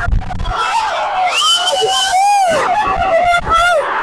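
Football crowd in a stadium shouting and screaming around the microphone, with several long, high yells from fans close by.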